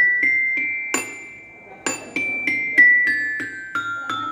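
A small metal-bar xylophone (a glockenspiel-style metallophone) struck with wooden mallets, each note ringing on. A few high notes climb at the start, a single note sounds about a second in, and from about two seconds a run of notes steps down the scale.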